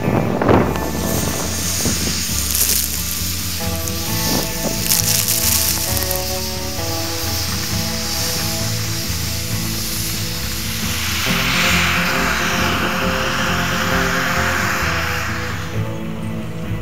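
Background music with changing bass and sustained notes. A steady hiss of noise lies over it, strongest in the second half.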